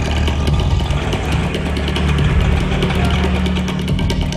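Auto-rickshaw's small engine idling steadily, with a fast, even ticking.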